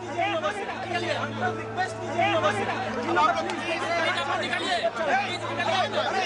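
A crowd of people talking over one another, many voices overlapping, with a steady low hum underneath.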